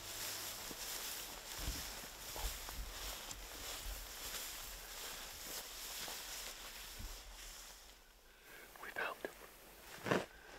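Footsteps swishing through tall grass, with soft thuds of boots, and two people whispering, briefly louder near the end.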